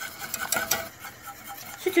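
Wire whisk stirring milk in a steel pot, with light clicks and scrapes of the wires against the pot, busiest about half a second in.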